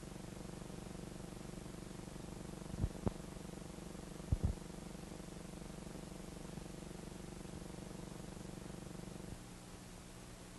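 Steady low hum with a fine buzz, the surface noise of an old film soundtrack, broken by two sharp pops about three seconds in and two more a second and a half later. Near the end the hum drops to a quieter, plainer tone.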